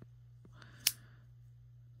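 Coast lockback folding knife being closed: a faint click, then one sharp metallic snap a little under a second in as the blade shuts into the handle.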